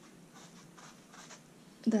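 Wire-bristled pet brush raking through synthetic hair in quick, repeated strokes, a faint scratchy brushing: backcombing the hair into a matted mass to form a dread.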